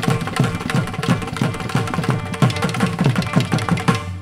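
Carnatic percussion ensemble led by mridangam playing a fast rhythmic passage, with low drum strokes that bend down in pitch several times a second. The whole ensemble stops together on a sudden final stroke at the very end.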